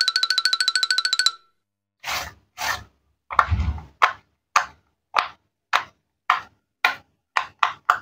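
Silicone pop-it fidget toy having its bubbles pressed one at a time by finger: a series of short pops roughly every half second, with a heavier knock about three and a half seconds in. Before the pops, a rapid run of high, ringing ticks lasts about a second and a half.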